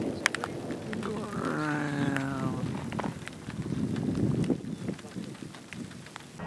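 Wind rushing with scattered sharp ticks like raindrops striking, and a brief stretch of muffled talk about a second and a half in.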